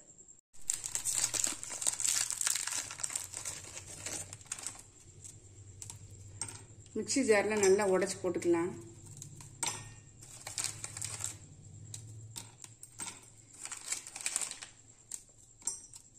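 Plastic biscuit wrapper crinkling and tearing open over the first few seconds. Then scattered small clicks and crackles as Oreo cookies are twisted apart over a steel bowl.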